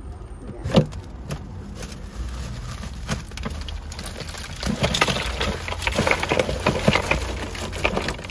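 A plastic bag of ice crinkling and rustling as it is handled and set down, with scattered clicks and knocks. The sound is busiest in the second half, over a steady low rumble.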